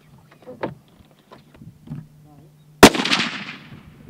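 A single .308 Winchester rifle shot: one sharp crack about three seconds in, followed by a rolling echo that fades over roughly a second.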